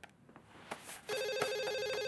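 Telephone ringing with a rapid electronic warbling trill, starting about halfway through after a second of quiet room tone.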